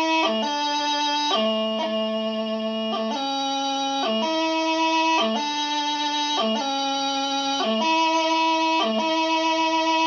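Highland bagpipe practice chanter playing a slow piobaireachd ground, with no drones. Steady held notes last about half a second to a second, each joined to the next by quick grace-note flicks.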